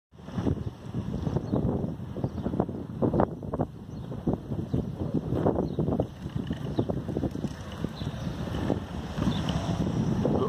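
Wind buffeting the microphone: an uneven low rumble with irregular gusts.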